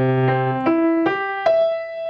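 Grand piano playing a slow broken chord: a low bass note struck together with a chord, then single notes about every 0.4 seconds, the last high note left ringing.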